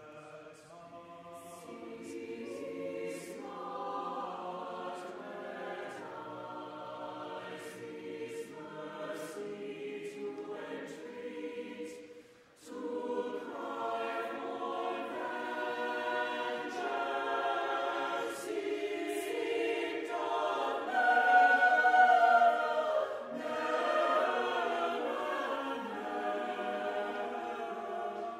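Church choir singing an anthem in a reverberant cathedral nave, with a brief pause about halfway through and a louder swell near the end.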